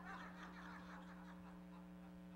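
Faint, scattered chuckling from an audience reacting to a joke, over a steady low electrical hum; the laughter fades out within the first second or so.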